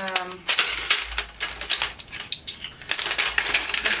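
Wooden coloured pencils clicking and clattering against each other, with irregular sharp knocks, as they are picked through to find one.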